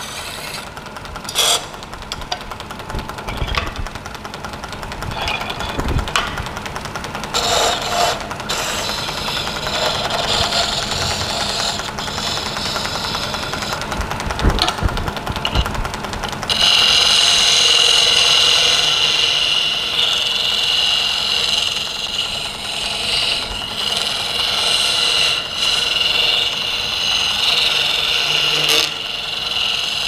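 Wood lathe spinning a wooden spindle while a hand-held turning tool cuts it, giving a continuous scraping cutting noise with a few short knocks early on. About sixteen seconds in the cut grows louder and takes on a steady high-pitched edge that holds to the end.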